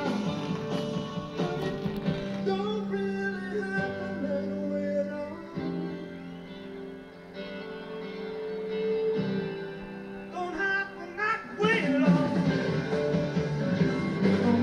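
Live rock band music heard through a television's speakers: held electric guitar and voice notes, easing into a quieter passage in the middle, then loud strummed electric guitar coming back in shortly before the end.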